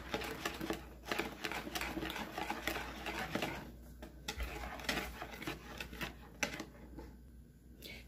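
Wire whisk beating flour into cake batter in a plastic bowl: a rapid clicking and scraping of the wires against the bowl, with a couple of brief pauses.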